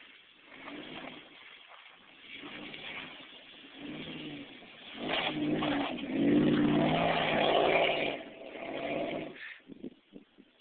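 Dodge Durango's 5.7 Hemi V8 revving through its exhaust in about six bursts, each rising and falling, the loudest and longest about six to eight seconds in.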